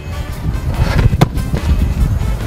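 Background music with a single sharp thud of a football being struck about a second in.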